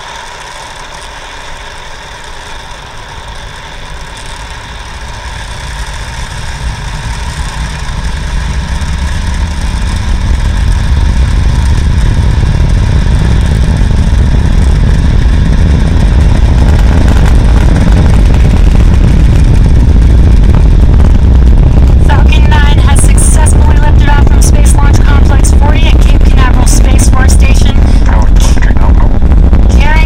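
Falcon 9 first stage's nine Merlin 1D engines heard at a distance during ascent: a deep rumble that swells over the first half and then holds steady and heavy. Sharp crackling comes in near the end.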